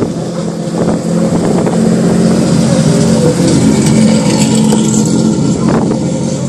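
Hillclimb race car's engine at high revs as the car drives past close by; the sound swells about a second in, holds steady and loud, then eases near the end.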